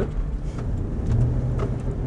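Car driving, heard from inside the cabin: a steady low engine and road rumble with a faint hum.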